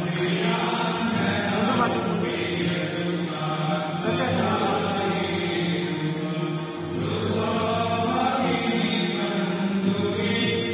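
Devotional chanting with music, sung on long held notes.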